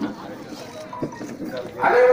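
Several people talking at once in the background, then a man's voice comes in loudly near the end.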